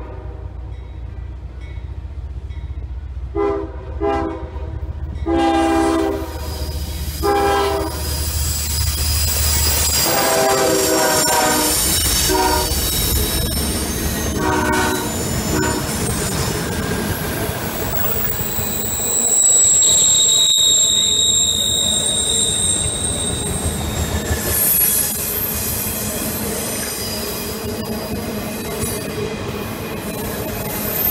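Freight train locomotive sounding a series of short and long horn blasts over a deep diesel rumble as it approaches and passes. It is followed by the steady rumble and clatter of autorack cars rolling by, with a high-pitched wheel squeal about two-thirds of the way through.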